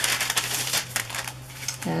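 Clear plastic packaging bag crinkling as it is handled, a dense run of crackles that dies down about a second and a half in.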